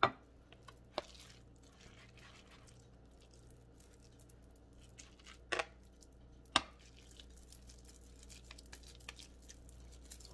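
Quiet hand-shaping of salmon croquette mixture, with a few sharp clicks of a metal spoon against a plastic container as the mixture is scooped: the loudest at the very start, then smaller ones about a second in, a double around five and a half seconds and one near six and a half seconds. Between them only faint soft handling sounds over a low hum.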